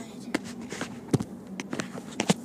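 Steady car-cabin road noise with a handful of irregular knocks and taps, the loudest about a second in, typical of a phone camera being moved about and bumped by hand.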